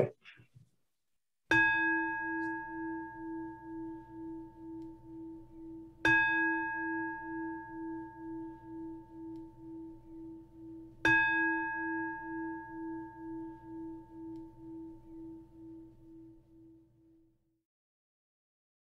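Singing bowl struck three times about five seconds apart, each strike ringing on with a slow, pulsing waver and fading away; the last dies out near the end. It is a closing bell marking the end of the Zen talk.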